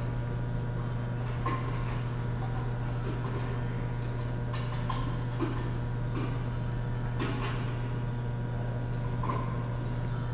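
Steady low electrical hum of a vibrating sample magnetometer system running while it holds its 10,000 oersted field set point during an automatic calibration, with a few faint clicks.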